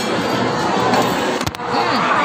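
Music over a noisy, busy restaurant din, broken by a sharp click and a brief dip in level about one and a half seconds in.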